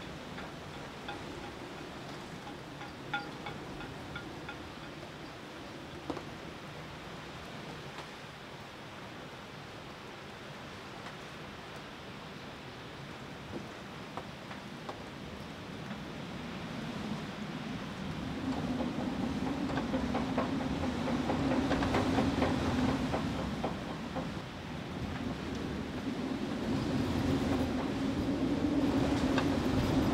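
Tropical-storm wind blowing over a sailboat's cockpit, an even rushing at first that builds about halfway through into louder gusts with a steady low hum.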